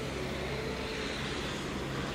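Steady low background hum of outdoor ambience, with a faint low held tone running through it.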